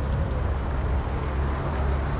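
Passenger cars driving slowly past at low speed, giving a steady low rumble of engine and road noise.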